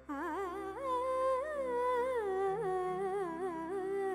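A woman's voice singing a wordless melodic line into a microphone, the pitch wavering and sliding between held notes, over a steady drone.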